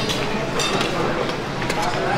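Steady background chatter of people in a busy room, with a light clink of a metal serving spoon against a steel chafing pan.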